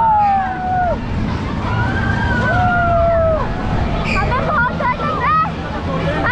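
Riders screaming on a swinging pirate-ship fairground ride. There are two long screams, each rising and then sliding slowly down, followed by shorter excited shouts and chatter over crowd hubbub.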